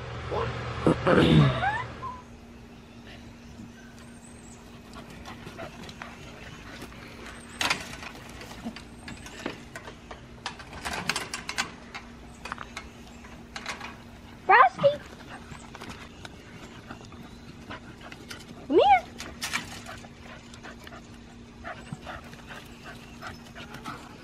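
Two dogs playing, with two short rising whines about four seconds apart in the middle, over scattered light clicks and rustles and a faint steady low hum. A cough and a laugh open it.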